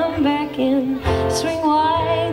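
A woman singing a folk song in long held notes, accompanied by her own strummed acoustic guitar.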